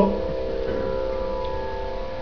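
A steady drone of several held tones at an even level, with no words over it.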